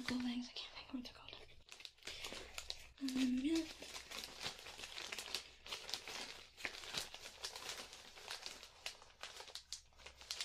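Clear zip-top plastic bag crinkling and crackling as it is handled close to the microphone, a dense run of sharp little crackles throughout.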